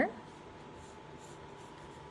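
Faint scratching of a pencil moving lightly over drawing paper, over low room noise with a thin steady hum.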